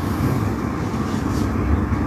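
A steady, low background rumble with no clear pattern or change.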